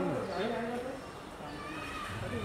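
Men's voices talking indistinctly in the first second, then a quieter background murmur.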